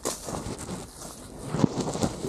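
Footsteps and a trekking pole on a path of dry fallen leaves, with wind on the microphone and a sharper knock about one and a half seconds in.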